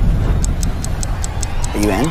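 Film trailer soundtrack: fast clock-like ticking, about five ticks a second, starting about half a second in over a low drone, with a brief line of speech near the end.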